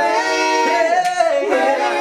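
Male a cappella vocal group singing wordless harmony, several voices holding and sliding sustained vowels at once, with a short sharp hiss about a second in.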